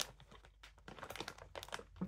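Faint, irregular crunching as a dark chocolate-coated peanut is chewed.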